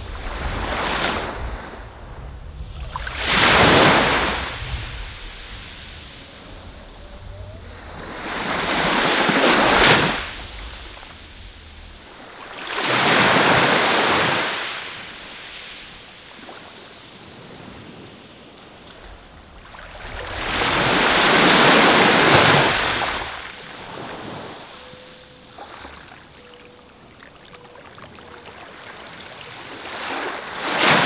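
Sea waves washing onto a sandy beach, the surf swelling and falling back in four big surges several seconds apart, over a low rumble of water in the first part.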